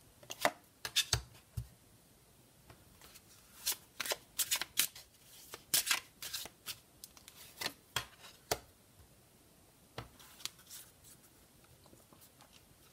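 A deck of Sibilla cards shuffled by hand, in several short bursts of crisp card clicks with pauses between them. Near the end, three cards are laid out on the tabletop.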